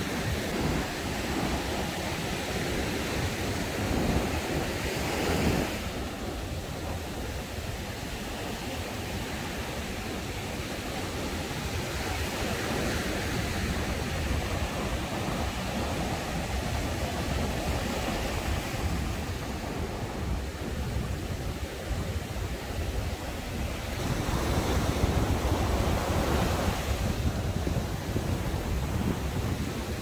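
Rough sea surf breaking and washing up a sandy beach, with wind rumbling on the microphone. The wash swells louder near the start and again about three-quarters of the way through.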